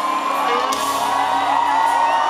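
A live rock band sustains a closing chord, electric guitar included, under a large crowd cheering and whooping.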